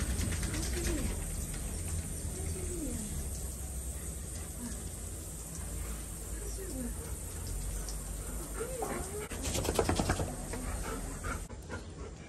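A dove cooing now and then in short arched calls over a low steady rumble, with a brief burst of noise about ten seconds in.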